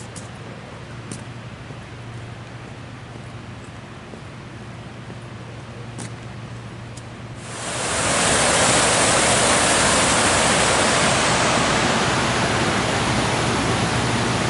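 Quiet outdoor ambience with a low steady hum and a few faint ticks. About halfway through, a cut brings in loud, steady rushing of creek whitewater.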